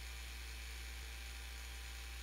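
Steady low electrical mains hum with a faint hiss behind it.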